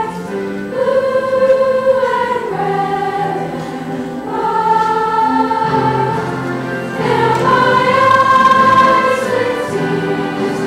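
Student choir singing in parts, slow sustained chords with each note held a second or two.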